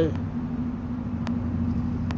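A steady, low mechanical hum and rumble with one held pitch, like a running engine or machine in the background.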